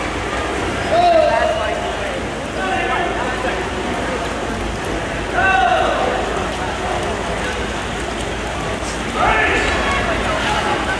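Spectators shouting drawn-out calls of encouragement over a steady wash of crowd noise in an echoing indoor pool hall during a swimming race. Loud calls come about a second in, at about five and a half seconds, and again near the end.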